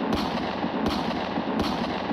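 A dense, steady crackling sound effect under a channel logo card, with a low thud about every three-quarters of a second.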